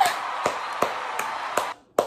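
Hand claps in a steady rhythm, about two and a half a second, over crowd noise that cuts off near the end.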